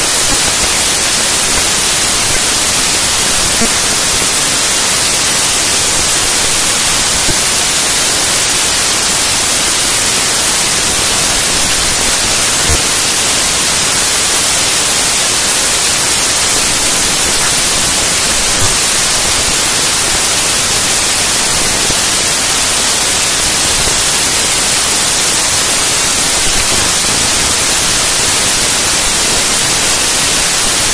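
Glitch 'raw data' electronic track: loud, steady static-like noise, brightest in the highs, with a faint tick about 13 s in and another near 19 s.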